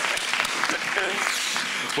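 Audience applauding: dense clapping.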